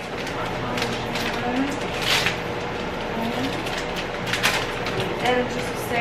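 Brief rustles and clicks of seasoning containers and a plastic bag of grated parmesan being picked up and handled, over a steady background hum.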